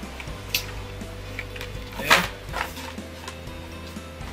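Plastic blister packs of toy cars and newspaper packing being handled: a few short crackles and clicks, the sharpest about two seconds in. Quiet background music runs underneath.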